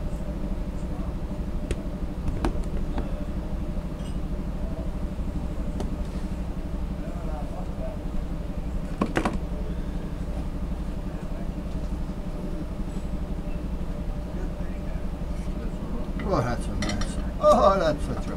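A sheet of glass being handled on a workbench: a few knocks and clinks, the loudest a little after halfway. Under it runs a steady low hum, and a short squeaky rubbing comes near the end.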